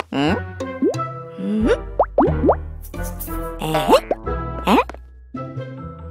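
Bouncy cartoon music for children, laced with comic plopping sound effects and several quick upward-sliding pitch glides.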